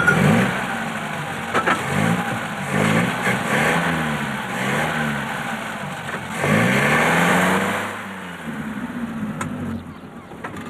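Small vintage car engine revving up and down repeatedly while reversing, as the car is backed up to free it from another car after a collision. A sharp click comes right at the start.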